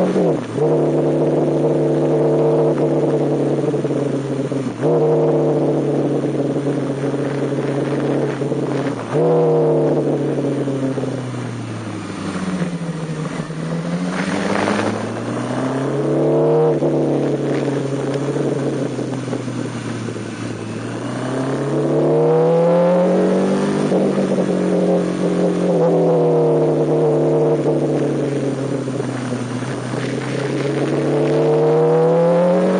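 MV Agusta Brutale S 750's inline-four engine under way on track. Its note breaks briefly at gear changes near the start, about five seconds in and about nine seconds in. After that it repeatedly falls off and climbs again as the throttle is closed for corners and reopened.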